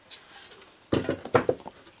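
Handling noises from someone rummaging for a small object close to the microphone: a soft rustle, then a cluster of light knocks and rustles about a second in.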